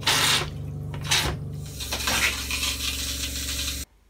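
RV toilet flushing with pink antifreeze: a rush of water at the start and again about a second in, then a steady spray into the bowl over the steady hum of the 12-volt water pump. It cuts off suddenly near the end.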